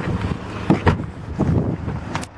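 Wind buffeting the microphone in a steady low rumble, with a few short knocks about two-thirds of a second, one second and one and a half seconds in.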